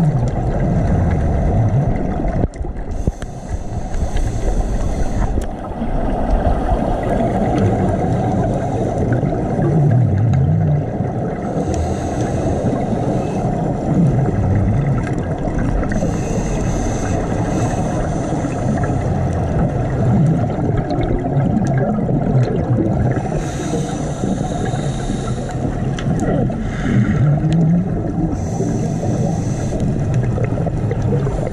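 Underwater sound picked up by a camera in its housing during a scuba dive: a steady low rumble of moving water, with a burst of bubbling hiss every few seconds, typical of a diver's exhaled breath leaving the regulator.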